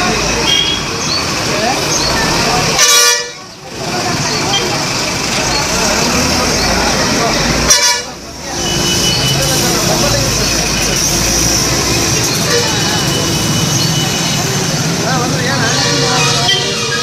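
Busy street traffic and crowd chatter, with vehicle horns tooting several times. Two loud, short horn blasts come about three seconds and eight seconds in.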